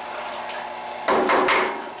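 A cedar block knocking and scraping against the bandsaw table and jig as it is handled and lifted off, loud for under a second starting about a second in. It plays over the steady hum of the running bandsaw.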